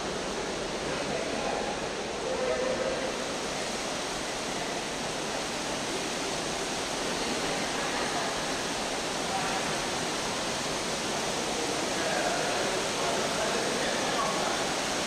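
Steady rush of the Rain Room's artificial rain: a dense field of water falling from a ceiling grid of nozzles onto a grated floor.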